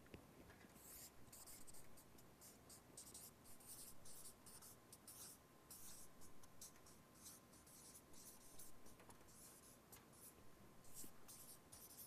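Near silence with faint, irregular scratching sounds.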